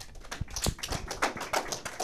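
A small group clapping: dense, irregular sharp claps.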